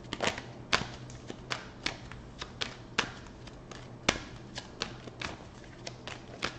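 Tarot deck shuffled by hand: a run of soft, irregular card snaps and slaps, about three or four a second, with one sharper slap about four seconds in.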